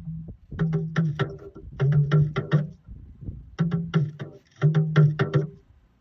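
Talking drum struck with a curved stick, played as four short phrases of quick strokes at a fairly steady low pitch, with short pauses between them.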